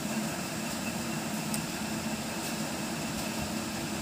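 Steady background hum and hiss, even throughout with no distinct events.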